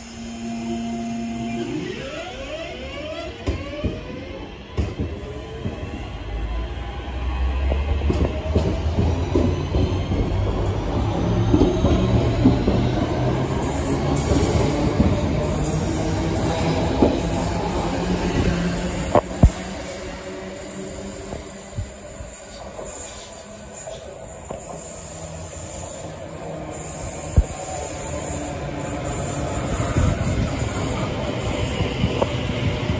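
An electric-area multiple-unit passenger train pulling away from a station platform: a short steady tone at the start, then a rising whine as it gathers speed, followed by heavier running and wheel-on-rail noise that fades as it leaves, with a couple of sharp clicks.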